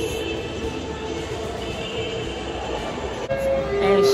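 Steady hum of a large indoor shopping mall, with background music playing.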